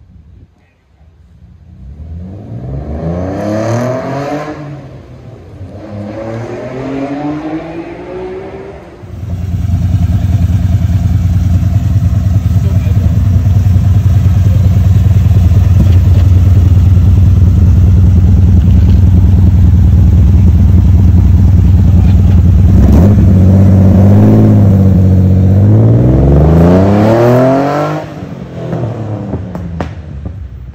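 A Datsun Z's twin-cam inline-six revved twice, then running loud and steady close to the microphone for about eighteen seconds, with one more rev rising and falling before the level drops near the end.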